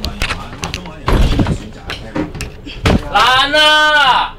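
Several heavy thumps and bangs against a minibus door, then a woman's long shouted cry in the last second, rising and falling in pitch.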